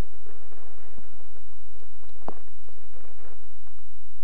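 Quiet room noise with a few faint clicks, one sharper click a little past the middle.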